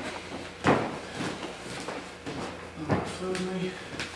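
A sharp thump about a second in, then scuffing and rustling of bodies and gis moving on foam gym mats as the grapplers get up, with a few indistinct words near the end.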